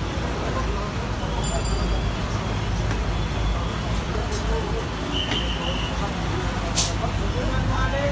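Busy eatery ambience: a steady low rumble of traffic and indistinct background chatter, with a few short clicks and clinks from the kitchen and one louder sharp crack about seven seconds in.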